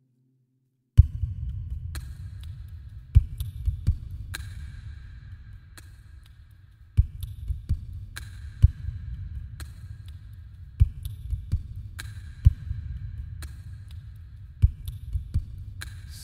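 A low, throbbing rumble that starts about a second in, broken by irregular sharp thumps and clicks, some in quick clusters.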